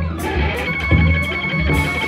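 Live trio music: electric guitar with bowed viola and drums. A high steady tone comes in about two-thirds of a second in and holds over the playing, with short drum or cymbal strikes throughout.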